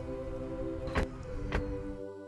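Background music with long held notes. Two short knocks sound over it, about a second in and again half a second later.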